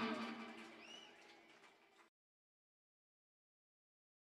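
The last of a live reggae band's sound dying away, with a faint high chirp about a second in, then the audio cuts to dead silence about two seconds in.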